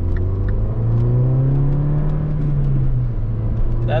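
Mini Cooper S Coupe's turbocharged 1.6-litre four-cylinder engine, heard from inside the cabin, rising in pitch as the car accelerates under part throttle. About three seconds in the pitch drops at an upshift of the six-speed manual, then holds steady.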